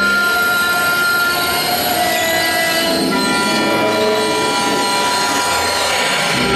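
Bass clarinet and accordion in a contemporary piece, sounding a dense cluster of high, sustained tones: many steady pitches held at once over a noisy hiss, with little low register.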